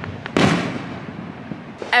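A firework going off about a third of a second in: one sharp bang that dies away over about a second.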